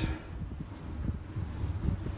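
Wind howling through the small unglazed window openings of a tiny concrete building, with uneven low gusts buffeting the microphone.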